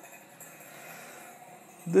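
Faint steady street ambience with a low hum of distant traffic.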